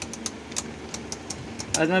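Two Beyblade tops spinning in a plastic stadium: a low steady whirr broken by sharp clacks at irregular short intervals as they knock together and against the stadium. A man's voice starts near the end.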